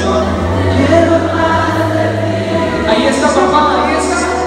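Live Christian band music with singing, loud through the sound system, over held keyboard chords and a steady deep bass note.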